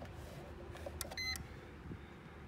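A short electronic beep from a 3M Dynatel 7550 locator transmitter, a little past a second in, just after a faint click, as its frequency button is pressed to step from 33 kHz to 82 kHz.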